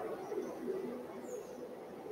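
Faint, steady drone of a helicopter flying low overhead, heard from indoors.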